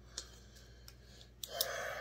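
A few light clicks of a pen and hands on paper at a metal workbench, the last one sharper about three-quarters of a second before the end, then a short hiss near the end.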